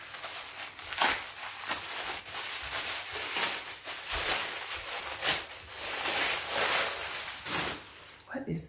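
Wrapping on a soft package rustling and crinkling steadily as it is pulled open by hand, with sharper crackles every second or two.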